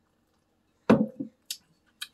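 A man swallowing a sip of beer: a short gulp about a second in, followed by a brief breathy exhale.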